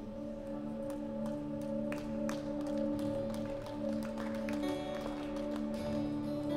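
Soft live worship music: a steady held chord with light plucked notes picked over it.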